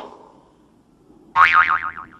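A sharp click at the start, then a short springy 'boing' about a second and a half in: a pitched tone that wobbles rapidly up and down for about half a second.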